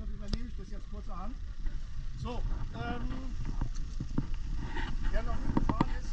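People talking in a gathered crowd, over a steady low rumble.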